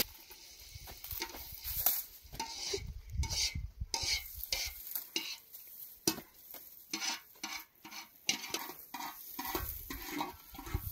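Bundled straw broom brushing over bare packed ground in light, irregular swishes, one short stroke after another.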